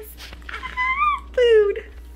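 Two short, high-pitched vocal calls from a small voice. The first rises and falls; the second, about half a second later, is lower and dips slightly.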